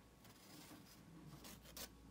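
Very faint scratchy rubbing of a nail buffer worked over a fingernail, buffing down a tea-bag patch on a broken nail, with a short brighter scrape near the end.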